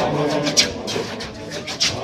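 Congregation singing a church hymn together. The singing breaks off about half a second in, leaving the sound of the crowd with sharp hits on a steady beat about every 1.2 seconds, two of them here.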